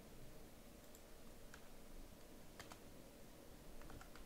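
A few faint, scattered computer keyboard keystrokes over near-silent room tone, including a quick pair of clicks past the halfway point.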